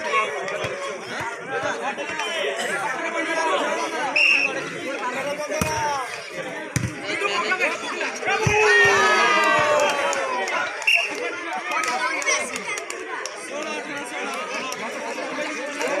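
Crowd of spectators chattering and calling out, many voices overlapping, with a louder stretch of excited shouting about nine seconds in. A few dull thuds stand out.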